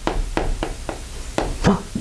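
Chalk tapping and striking on a chalkboard as an equation is written: a quick, uneven series of sharp taps, about six in a second and a half. A short gasp of a voice comes near the end.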